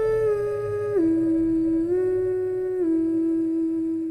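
A voice humming a slow tune in long held notes. It starts on a higher note, steps down about a second in, rises briefly near the two-second mark, then settles back down and holds.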